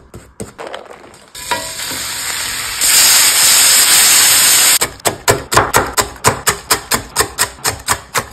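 Bacon strips sizzling in a hot frying pan, the hiss growing loud about three seconds in and cutting off suddenly before the five-second mark. Then a knife chopping crisp cooked bacon on an end-grain wooden cutting board, about four quick chops a second.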